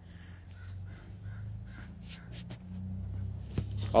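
A few short, faint bird calls over a steady low hum, with a single click near the end.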